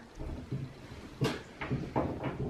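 Light handling noise and a couple of sharp knocks in the second half, as a metal shelf bracket and spirit level are held and shifted against a plasterboard wall.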